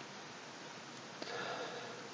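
A person's short audible breath through the nose, once, a little past a second in, over a faint steady hiss.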